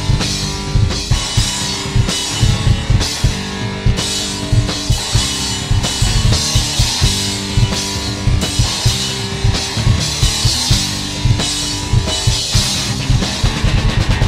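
Rock trio playing live without vocals: Gretsch electric guitar and bass guitar holding chords over a drum kit hit hard and steadily.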